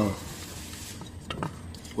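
A stirrer working through thick Condursal anti-scale coating in a metal tin: a soft, even stirring noise with a few sharp clicks of the stirrer against the can about a second in.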